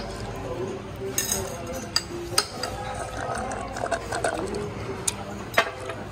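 Metal cutlery clinking against a plate as someone eats, a few sharp clinks with the sharpest near the end, over a murmur of voices.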